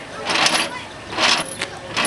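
Hand-cranked screw-lift flood gate being wound by its handwheel: the threaded stem and gate mechanism give a metallic grinding rasp with each turn, repeating about once a second as the gate moves slowly.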